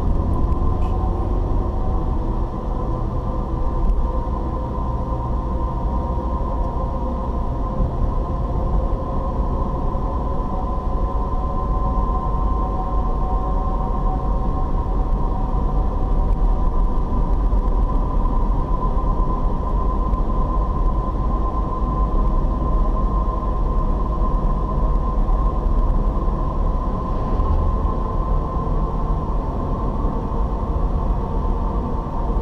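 Steady road and engine noise inside a moving car: a low tyre-and-engine rumble on tarmac, with a faint steady whine above it.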